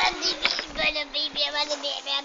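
A child singing, holding one long note, with other voices over it.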